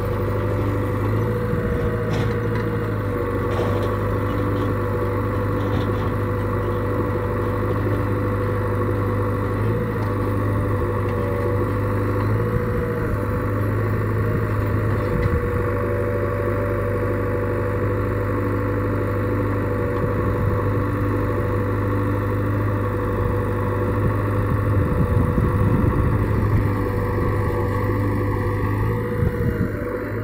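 JCB 3DX backhoe loader's diesel engine running steadily while the backhoe arm digs, with a steady hum and a somewhat louder stretch near the end.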